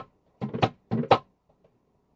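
Tambora drum struck twice, about half a second apart, each a sharp crack with a short ringing tone.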